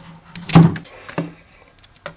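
Handling noise of a small boxed device and its plastic wrapping: a few sharp clicks and rustles, with one loud thump about half a second in.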